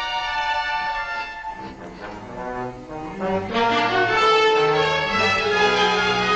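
Orchestral horror film score: held notes that thin out and soften for a couple of seconds, then swell louder with low, deep notes coming in about three and a half seconds in.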